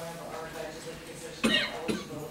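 Low voices talking, with one short, loud cough about a second and a half in.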